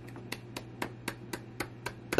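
Light hand claps in a quick, even rhythm, about four a second.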